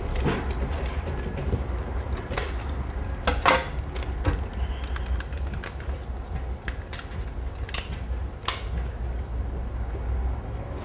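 A steady low hum under a scattering of light clicks and clinks, the loudest about three and a half seconds in.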